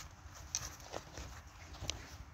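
Snow and ice crunching and scraping as someone kneeling on the ice shifts about and handles fishing gear, with a few light clicks and two sharper clicks, about half a second in and near the end.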